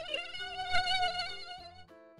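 Mosquito whine sound effect: a high, wavering buzz that fades out near the end.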